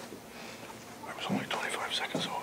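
Low, whispered-sounding talk, starting about a second in.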